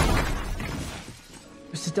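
Movie sound effects of a shopfront explosion's aftermath: a sharp crash, then debris and glass shattering and falling, fading away over about a second.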